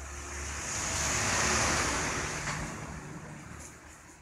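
Audience applauding: a burst of clapping that swells, peaks and dies away over about three seconds.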